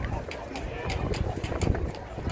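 Outdoor field ambience of indistinct voices from people standing and sitting around, with scattered light clicks and a low rumble underneath.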